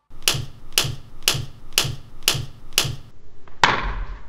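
Six sharp, evenly spaced percussive strikes, about two a second, each with a low thud under it. Near the end comes a click and a louder, noisier burst.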